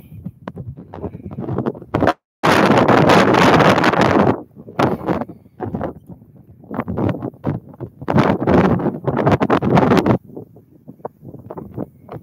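Wind buffeting the microphone in irregular gusts. The audio cuts out completely for a moment a little after two seconds in.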